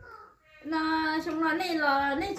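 A woman's voice singing unaccompanied in long, held notes, starting about half a second in after a short pause.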